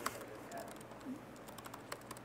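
Typing on a computer keyboard: quiet, irregular key clicks, with several in quick succession near the end.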